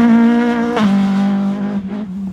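Darrian T90 GTR rally car's engine run hard at high revs as the car passes close by. The note drops sharply once, about a second in, like a gear change, and starts to fade near the end as the car pulls away.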